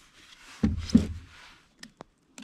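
Two dull knocks with a brief low rumble, a little over half a second in, then a couple of faint clicks: handling noise as a just-caught rainbow trout is unhooked from a lure in a plastic kayak.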